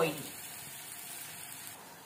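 Breadcrumb-coated paneer and almond kebabs sizzling steadily as they shallow-fry in a little oil in a non-stick pan over medium-low heat.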